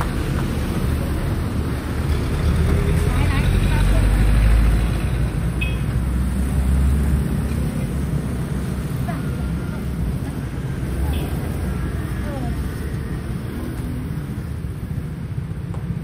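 Street traffic: a motor vehicle's engine rumble swells close by from about two seconds in and fades away by about seven seconds, over a steady traffic hum, with voices of passers-by.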